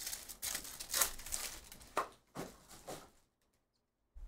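Foil wrapper of a Topps Stadium Club baseball card pack crinkling and tearing as it is ripped open by hand, a run of quick scratchy rustles that stops about three seconds in.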